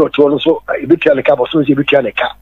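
Speech only: one voice talking without a break.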